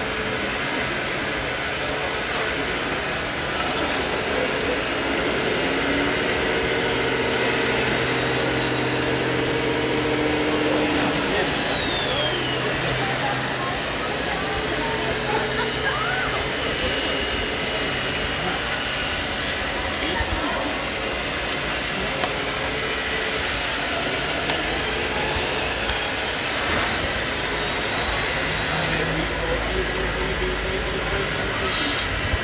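Steady background chatter of many people, with a low pitched machine hum that stands out for about five seconds, starting about six seconds in.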